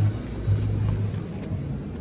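Low steady rumble of city street traffic as a shop door is pushed open.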